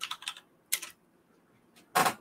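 Computer keyboard typing in short bursts of clicks: a quick run at the start, a brief burst just under a second in, and a louder clack at the end.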